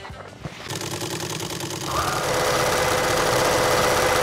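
A logo-sting sound effect: a dense mechanical whirring swells up under a second in and holds steady and loud, with two sustained tones joining about two seconds in.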